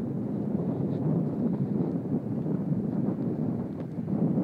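Wind buffeting a handheld camera's microphone: a steady, rumbling rush that rises and falls slightly.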